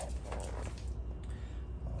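Faint handling sounds of hands and bowls at a kitchen counter over a low steady hum, with a short muffled sound about half a second in.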